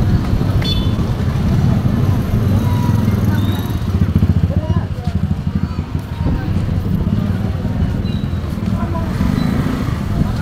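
Busy street ambience: background crowd chatter over a steady low rumble of motorcycle and traffic engines.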